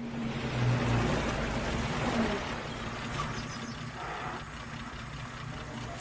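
A 1930s saloon car's engine running as the car rolls slowly along a gravel drive, a steady low hum and rumble.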